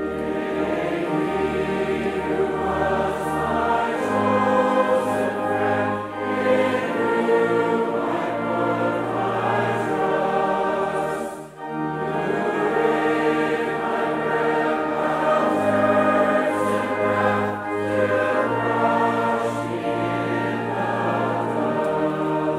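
A church congregation sings a metrical psalm in slow, sustained notes, accompanied by pipe organ. There is a short break between lines about halfway through.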